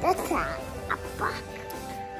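A young child's high voice making a few short vocal sounds that rise and fall in pitch, the longest right at the start, over steady background music.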